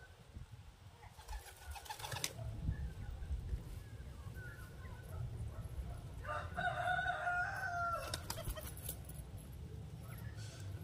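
A rooster crows once, a single long call of about two seconds starting around six seconds in. Short clusters of clicks and rustles come before and just after the crow.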